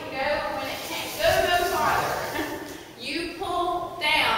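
A woman talking, with no other sound standing out from her voice.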